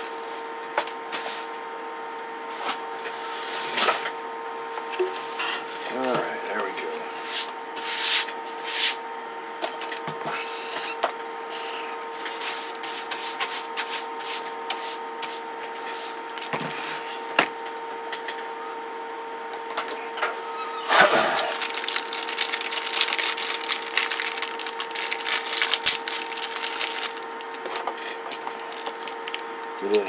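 Handling noise on a workbench: a plastic bag rustling and a power cord being unwrapped, with scattered clicks and knocks. A steady tone sounds underneath throughout.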